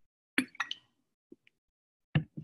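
A person drinking from a bottle: a quick cluster of wet plops and gulping clicks about half a second in, then two faint ticks a second later.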